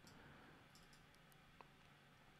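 Near silence: faint room tone with a few faint, short clicks.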